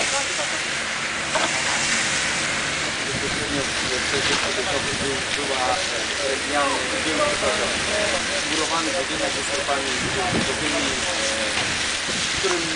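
Steady hiss of a fire hose's water spray hitting smouldering wreckage, with sizzling from the wet embers, while voices talk in the background.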